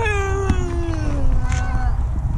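A single long meow-like cry, falling steadily in pitch over about two seconds.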